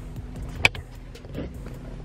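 Car engine idling, heard from inside the cabin as a steady low hum, with one sharp click about two-thirds of a second in and a softer knock later.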